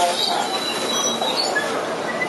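Interior noise of a King Long KLQ6116G city bus slowing for a stop, with a thin high-pitched brake squeal and a few short squeaks over the steady running noise.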